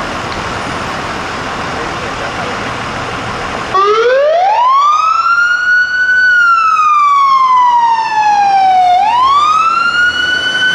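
Fire rescue truck's siren starting up about four seconds in on a wail: the pitch rises over a couple of seconds, holds briefly, falls slowly, then climbs again near the end. Before it, a steady noise of the idling truck and street traffic.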